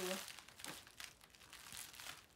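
Bubble wrap crinkling faintly as hands press and wrap it around flower stems, with a few soft crackles.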